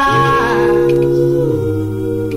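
Doo-wop vocal group holding a sustained harmony chord between the lead's lines, the bass voice stepping down to a lower note about one and a half seconds in.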